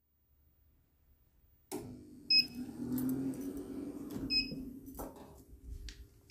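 Silence for nearly two seconds, then a low, noisy rumble with short high electronic beeps about two seconds apart.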